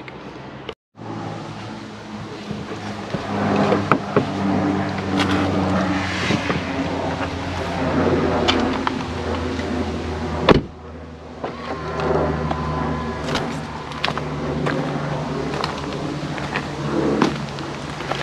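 A car running with a steady low engine hum and scattered clicks and knocks. The sound drops out briefly just under a second in and breaks off sharply about ten and a half seconds in, then the hum carries on.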